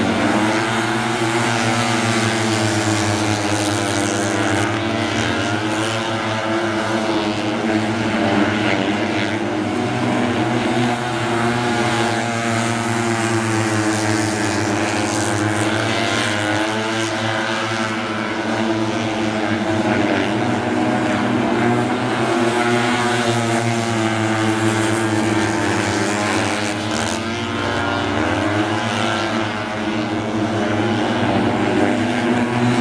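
Four mini speedway bikes racing a heat together, their engines running hard with the pitch repeatedly rising and falling as the riders open the throttle on the straights and ease off into the bends.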